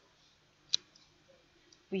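A single sharp, short click a little before the middle of a quiet pause, followed by a few much fainter ticks; a woman's voice begins right at the end.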